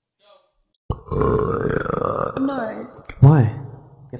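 A person burping: one long, loud, rough burp starting about a second in, after a moment of silence, followed by a short burst of voice.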